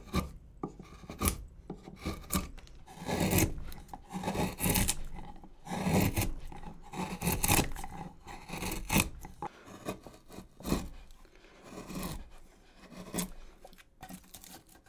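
Hand-pushed wood gouge cutting into basswood, a series of short scraping strokes about a second apart as shavings peel off, with a few sharp ticks near the beginning.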